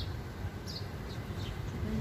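Steady low outdoor rumble with a few short, high, falling bird chirps scattered through it.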